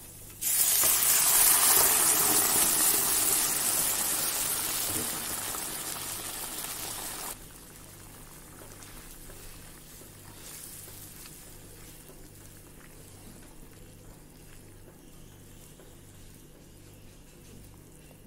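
Loud sizzling as cooked kidney beans with their liquid go into the hot fried onion-tomato masala in a pan. The sizzle fades slowly, then cuts off suddenly about seven seconds in, leaving only a faint low hum.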